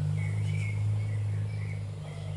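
Outdoor garden ambience: a steady low hum with a few faint, short high chirps in the first half and again just after the middle.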